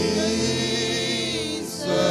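Slow hymn singing with accompaniment: long held notes that waver in pitch, with a short breath-like break near the end.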